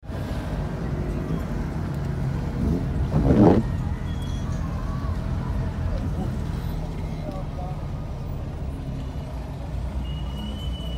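Steady low rumble of a car's engine and tyres heard from inside the cabin while driving slowly in traffic, with a brief louder whoosh about three seconds in.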